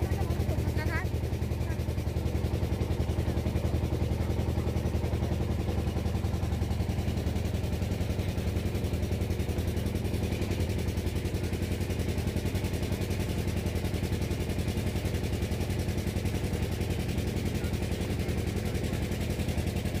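A boat's engine running steadily with a fast, even chugging and a low hum.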